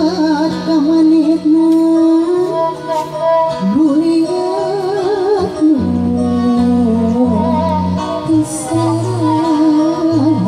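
Sundanese tembang singing in laras mandalungan tuning: a woman sings a wavering, heavily ornamented vocal line, accompanied by two kacapi zithers and a violin.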